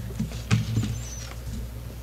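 Pages of a Bible being leafed through on a wooden pulpit: scattered soft rustles and ticks at irregular intervals, with light knocks of hands against the pulpit.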